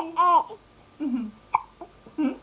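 A baby boy's short, high-pitched burst of laughter, then a softer falling vocal sound and a single sharp hiccup about a second and a half in.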